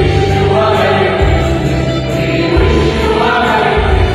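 Mixed choir of women and men singing a Christmas hymn, over a low accompaniment that changes note about every second and a half.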